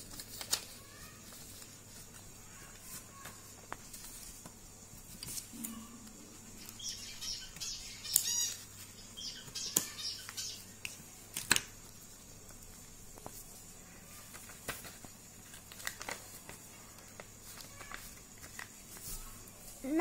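Scissors snipping small notches into a folded sheet of paper, between stretches of paper rustling as the sheet is handled and folded. A few sharp snips stand out in the middle.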